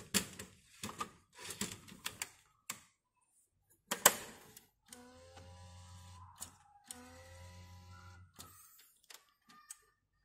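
Epson WorkForce Pro WF-C5210 inkjet printer: plastic clicks and rattles as an ink cartridge is pushed into its bay, ending in a loud snap about 4 s in. The printer's internal motor then runs with a steady hum in two stretches of about a second and a half each while the printer takes in the cartridge.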